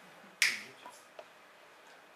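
A single sharp snap about half a second in, fading quickly, then a faint click a little after a second, over low room tone.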